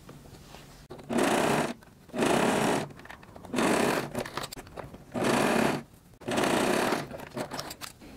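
Domestic electric sewing machine stitching a seam through layers of lycra. It runs in five short bursts of under a second each, with brief pauses between them.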